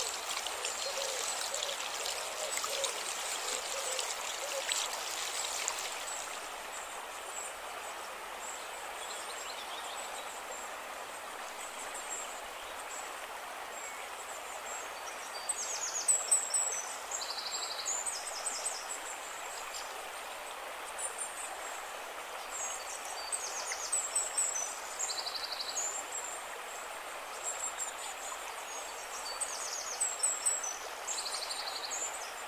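Shallow forest stream rushing over stones, a steady, even rush of water. From about halfway through, short high chirps repeat over it.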